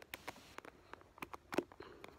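Wooden popsicle sticks being handled and fitted together: a scatter of small, faint clicks and taps, about six in two seconds.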